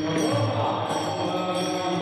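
Devotional chanting by a group of voices with small hand cymbals (taal) struck in a steady rhythm, over a sustained held tone.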